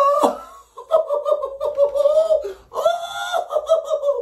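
A man laughing and crying out in pain in several strained, high-pitched bursts as electric shocks from a nerve stimulator turned to full strength run through his chest.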